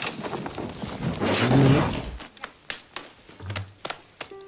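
Film soundtrack from a burning-Christmas-tree scene: a loud rushing burst of noise with a low rumble about a second and a half in, followed by scattered sharp knocks and clatters.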